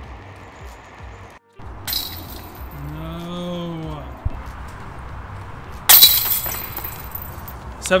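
Disc golf disc striking the metal chains of a disc golf basket: a sharp jingling crash of chains about six seconds in, the loudest sound, with an earlier metallic clink about two seconds in. In between comes a long vocal 'ooh' that rises and falls in pitch.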